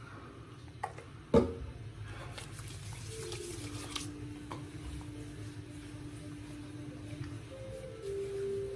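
Hands slapping and patting aftershave onto bare skin: a sharp slap about a second and a half in, then lighter pats. From about three seconds in, a soft held musical note steps down in pitch and holds until near the end.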